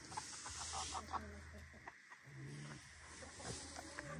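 Chickens clucking quietly in a poultry pen, with a scattering of short, soft calls.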